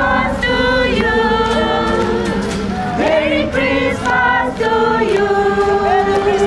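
A crowd of carol singers singing together, holding long notes with swoops up and down between them.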